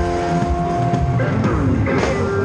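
Live band music led by electric guitar holding sustained notes, then, over the second half, a series of notes sliding down in pitch.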